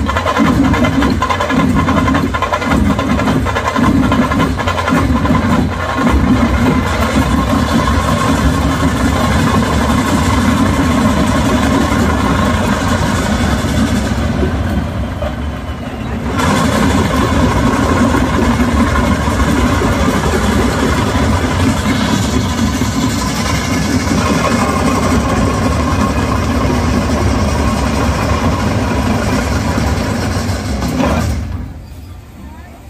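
Loud massed drumming from a large folk dance troupe, with strong regular beats for the first few seconds that then blur into a dense continuous din, dipping briefly in the middle.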